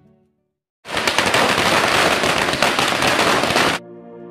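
After a brief silence, a loud, dense crackling noise starts abruptly about a second in and runs for about three seconds, then cuts off sharply as music comes back in.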